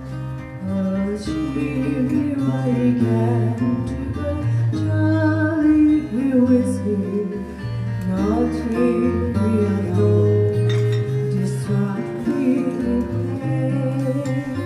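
Live acoustic folk music: two acoustic guitars and an upright bass, with a voice carrying a sliding melody line over the bass notes.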